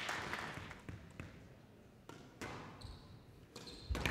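A few isolated sharp knocks of a squash ball being hit and bouncing off the court walls and floor in a quiet, echoing hall, with the crowd noise dying away at the start.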